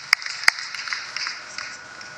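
Audience applause dying away: a couple of last sharp hand claps early on over a fading patter.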